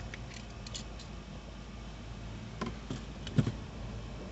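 A few light clicks and taps from a small candle lantern and its parts being handled, the sharpest about three and a half seconds in, over a steady low hum in the vehicle's cabin.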